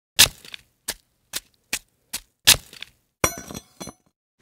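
A series of six sharp cracking impacts about half a second apart, the first and fifth the loudest, then a short rattling clatter with a bright ringing edge near the end.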